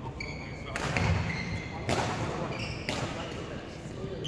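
Badminton racket strikes on shuttlecocks, three sharp hits about a second apart, with rubber-soled shoes squeaking and feet thudding on the wooden court floor. The hall rings after each hit.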